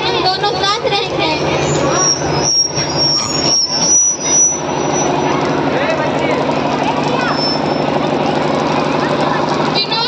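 Children's voices speaking into handheld microphones, played loud through a large PA loudspeaker system over a steady noisy background.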